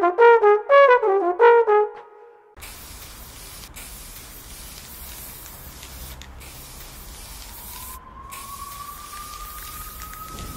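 Trombone playing a quick run of short notes that stops about two and a half seconds in. An aerosol spray can follows, hissing in long bursts with brief breaks, and a faint rising tone sounds under it near the end.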